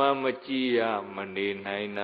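A Buddhist monk's male voice chanting Pali verse in a drawn-out, nearly level recitation tone, with a short break for breath.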